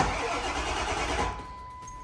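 Starter of a Ford 7.3 Powerstroke diesel cranking for about a second without the engine catching: the Hydra tuner's no-start anti-theft tune keeps it from firing. After the cranking stops, a steady high tone sounds.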